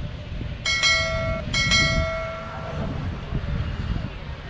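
A vehicle horn honks twice: a short blast, then a longer one that fades out about three seconds in. A steady low rumble of wind and traffic runs underneath.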